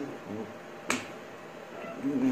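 A single sharp snap of the hands about a second in, struck while signing, with faint wordless voice sounds around it.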